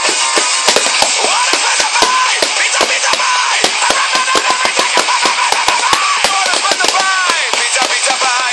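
Drumsticks beating quickly and unevenly on a makeshift drum kit of plastic video game and DVD cases, several hits a second, played along to a recorded song with singing.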